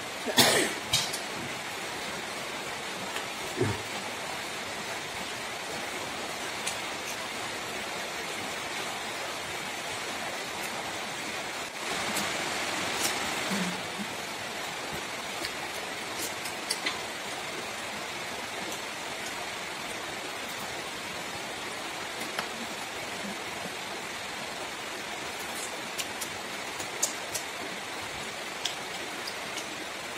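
Quiet eating sounds of two people eating with their hands from a metal platter: scattered soft clicks, smacks and chewing over a steady background hiss, with a short, slightly louder stretch about twelve seconds in.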